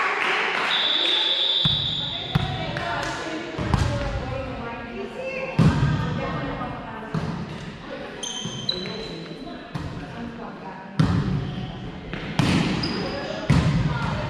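Volleyball being played in a large, echoing gym: sharp smacks of the ball off players' hands and arms, and off the court floor, about nine in all and spaced a second or two apart. Several short high squeaks of court shoes come between them.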